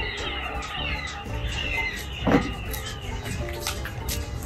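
Birds chirping and warbling over quiet background music, with a brief sharp sound a little past halfway.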